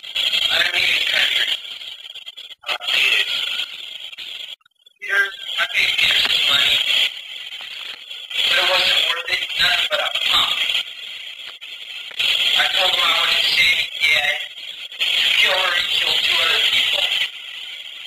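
Dialogue on an old 8mm magnetic sound-stripe film soundtrack, too unclear to make out words: voices speak in short stretches with brief pauses, and there is a near-silent break about four and a half seconds in.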